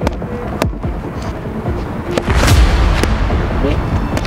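Boxing gloves smacking focus mitts in several sharp slaps, with a louder burst of low rushing noise about halfway through.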